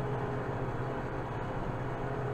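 Kubota M7060 tractor's four-cylinder diesel engine running steadily with a deep hum as the tractor drives across the field, heard from inside the cab.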